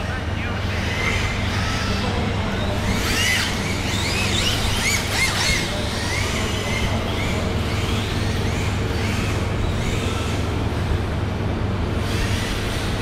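Electric RC drift cars running around a workshop floor, their motors whining in many short rising and falling pitches as the throttle is blipped, busiest a few seconds in, over a steady low hum.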